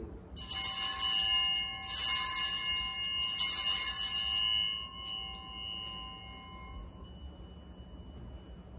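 Altar bells rung at the elevation of the host after the consecration, struck three times about a second and a half apart, their bright, high ringing fading away over the next few seconds.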